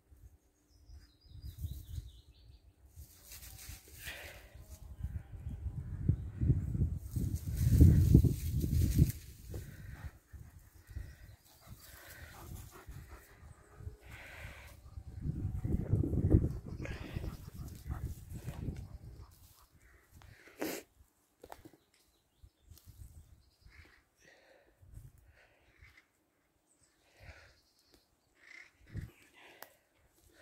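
German Shepherd dogs close by on a woodland walk, with two louder stretches of low, rough noise, the loudest about eight seconds in and another around sixteen seconds.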